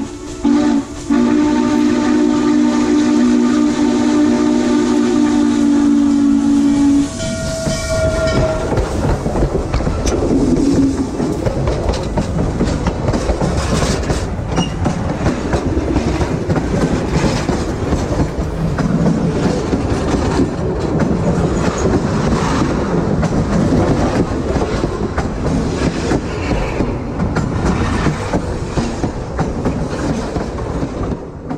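A steam locomotive's whistle blows a low, chord-like blast, broken twice in the first second and then held for about six seconds before cutting off. The train then rolls directly over the track, its wheels clattering and clicking over the rails.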